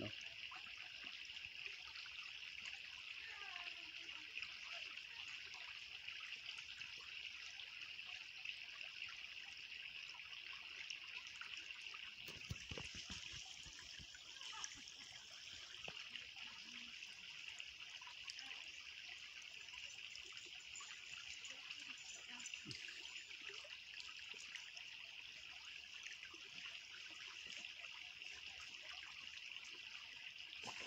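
Small woodland stream trickling steadily over stones, a faint, even running-water hiss.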